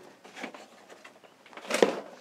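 A plastic seed tray being pulled out from under a bench: a faint soft rustle, then one sharp plastic knock near the end.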